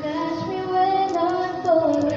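Singing with musical accompaniment: a high voice holding long notes that step up and down in a melody.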